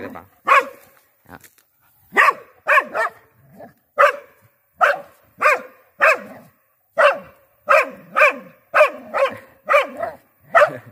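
Thai Ridgeback dog barking repeatedly, alerting at a snake hidden in the weeds along a wall. A few scattered barks at first, then a steady run of about two barks a second.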